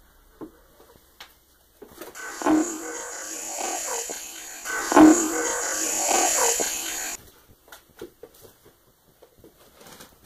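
A block of loud hiss lasting about five seconds, starting and stopping abruptly, with two thumps in it, the first about half a second in and the second about halfway through. The investigator captions this stretch as a voice saying "I need help".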